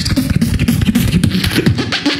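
Beatboxing: a fast, dense beat of clicks and snare-like hits over a low bass tone, all made with the mouth, with no instruments or effects.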